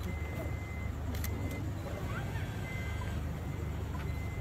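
Van engine idling, a steady low rumble, with a thin high electronic beep tone that sounds on and off several times, and voices murmuring.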